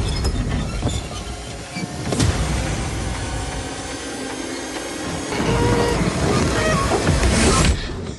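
Horror trailer score: a loud, dense wash of noisy sound design with a heavy hit about two seconds in. It builds again and cuts off abruptly just before the end.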